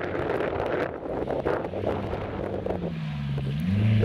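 Rally car's engine running hard on a dirt stage, its note sagging and rising with the throttle, climbing near the end as the car powers through a muddy corner, with wind on the microphone.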